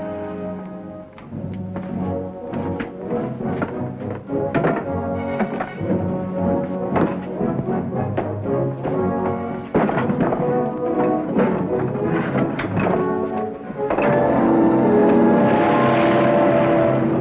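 Orchestral film score: a held chord, then a long run of short, accented staccato hits with heavy percussion, swelling into a loud sustained chord near the end.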